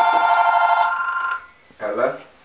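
Mobile phone ringing with a fast warbling electronic ringtone of several tones. It cuts off about one and a half seconds in, as the phone is answered.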